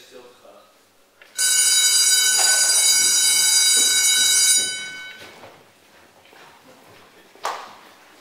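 An electric school bell rings loudly for about three seconds and then dies away: the bell marking the end of the lesson. A short knock sounds near the end.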